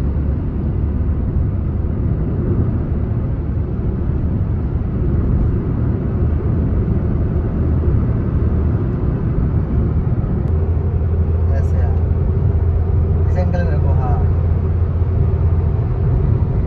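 Steady road and engine rumble of a car cruising at highway speed, heard inside the cabin, with a deeper hum setting in about ten seconds in.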